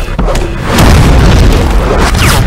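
Deep booming cinematic hits from a fight-film trailer soundtrack, with music underneath. There is a sharp impact right at the start, and it swells louder from just under a second in.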